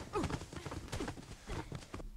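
A wounded girl's faint pained grunts, a run of short falling sounds about three a second, from a TV drama's soundtrack.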